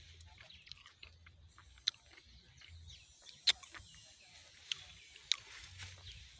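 A man chewing a freshly picked strawberry: faint mouth sounds with a few sharp clicks and smacks, over a low steady rumble.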